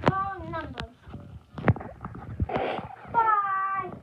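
A young girl's high-pitched, sing-song vocalizing without clear words: one drawn-out passage at the start and another near the end. Between them come a few sharp knocks and a short breathy burst.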